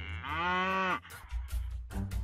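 African buffalo giving one bellowing call about a quarter second in, lasting under a second and dropping in pitch as it ends, over background music.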